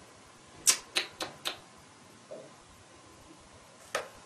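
Four short, sharp clicks in quick succession, then one more just before the end.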